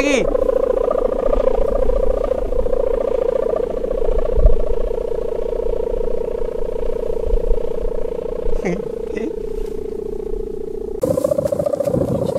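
A flying kite's hummer droning loudly: one steady buzzing tone with a fast flutter that holds the same pitch throughout. Near the end a rush of wind noise rises over it.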